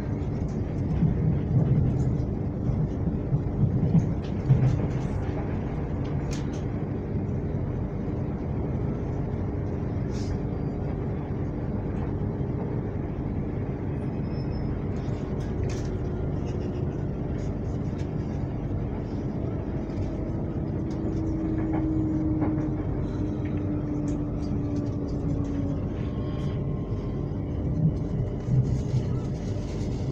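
Inside a moving electric commuter train: a steady rumble of wheels on rail with a constant motor hum, whose pitch slides a little lower about two thirds of the way through. The rumble swells in short louder bumps near the start and again near the end.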